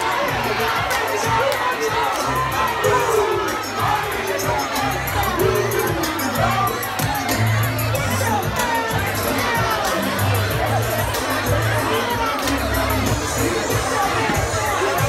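A dense crowd shouting and cheering close around the microphone, many voices at once, with the bass of a music track pulsing underneath.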